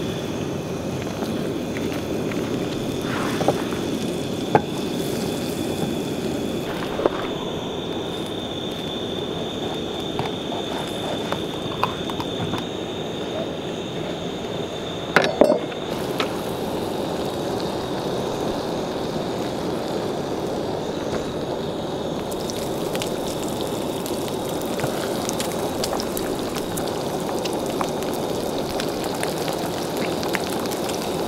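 Butter melting and sizzling in a frying pan on a gas-canister camp stove, over the burner's steady hiss. A few sharp clicks stand out, the loudest a pair about halfway through.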